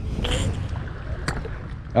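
Small boat moving slowly across calm water, with a steady low motor rumble. A brief hiss of water or wind comes about a quarter second in, and a faint click near the middle.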